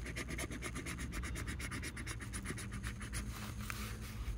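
A coin scratching the coating off a paper lottery scratch-off ticket in quick, even strokes, about ten a second.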